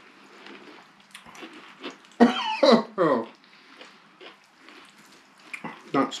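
A person's short throaty vocal outburst, two loud voiced bursts about two and three seconds in, like a cough or sputter. Quiet faint clicking of chewing fills the rest.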